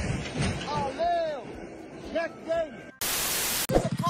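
Voices crying out with rising-and-falling pitch, then a burst of even, static-like hiss lasting under a second about three seconds in, which cuts off abruptly.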